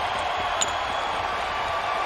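Arena crowd noise after a goal, a steady din, with a single faint click about half a second in.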